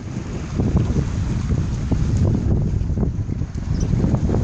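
Wind buffeting the phone's microphone: a continuous low rumbling rush that swells and dips with the gusts.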